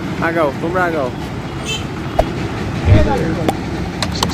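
Roadside street ambience with a steady traffic hum and a man's voice speaking briefly at the start. A sharp click a little after two seconds in is followed by a dull thump about three seconds in, the loudest sound.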